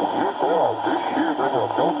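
A man's voice on single-sideband radio, demodulated by a receiver using an external BFO. The speech sounds narrow and thin, cut off above about 1 kHz, over steady receiver hiss.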